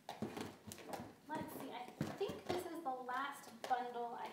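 Low, indistinct speaking voice, with a few sharp light clicks or knocks in the first couple of seconds.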